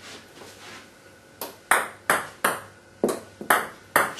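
Table tennis ball struck by the bat on serves and bouncing on the table: a quick run of about seven sharp ticks in two clusters, starting about a third of the way in.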